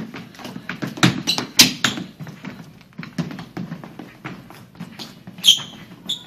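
Sneakers stamping, tapping and scuffing on a wooden parquet dance floor as two children dance, in an irregular run of sharp footfalls. A brief high squeak comes about five and a half seconds in.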